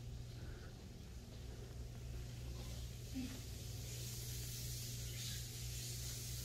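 Quiet room tone: a steady low hum under a faint hiss that grows brighter about four seconds in.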